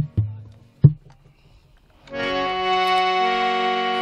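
A few hand-drum strokes in the first second. Then, about two seconds in, a harmonium starts playing a steady held chord, its reeds sounding together.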